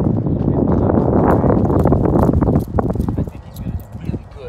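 Wind buffeting the microphone: a loud, rough rumble for the first two and a half seconds that then eases off.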